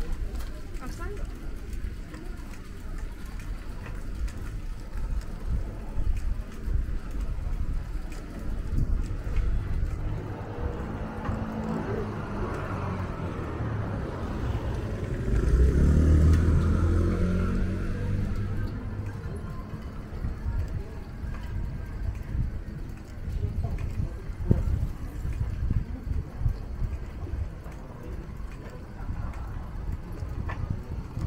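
Night street ambience: the walker's footsteps and passers-by talking, while a motor vehicle approaches and passes about halfway through, its engine swelling to the loudest point and fading away over several seconds.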